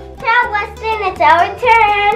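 A child's voice in drawn-out, sing-song pitched phrases, over steady background music.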